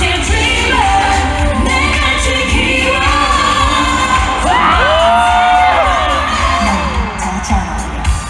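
A female singer performing a pop song live in an arena over a loud backing track with a steady beat. She sings a long sliding, held line in the middle, and the crowd is heard underneath.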